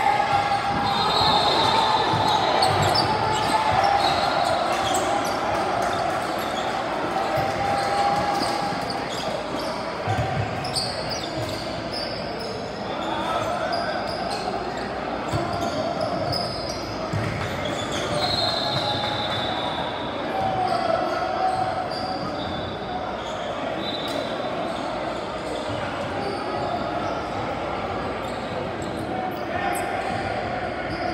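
Basketball bouncing on a hardwood gym floor during play, mixed with players' and spectators' voices calling out across the gym.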